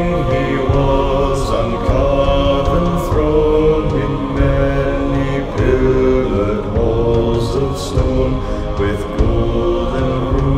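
A low male vocal ensemble singing a slow hymn-like melody in close harmony, the words drawn out into long held chords that change about once a second.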